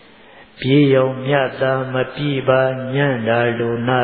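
A Buddhist monk's voice chanting in a steady, nearly level-pitched recitation, beginning about half a second in, with long held syllables and only brief breaks for breath.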